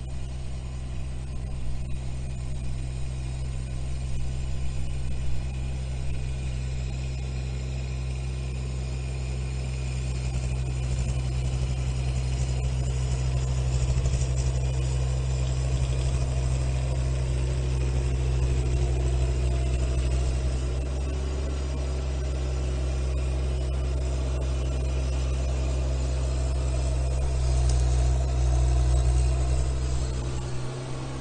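Kubota U17 mini excavator's three-cylinder diesel engine running steadily as the machine tracks along and works its boom, hauling whole trees over the snow. The engine grows a little louder near the end.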